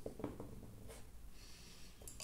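A dropper bottle of black wash being shaken by hand: a quick run of faint knocks, about six a second, that dies away within the first half second, followed by a single light click.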